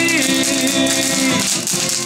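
Acoustic guitar strummed in a steady rhythm, with the tail of a sung note ending in the first moments.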